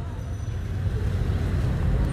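Low, steady rumble of road traffic, growing slightly louder toward the end.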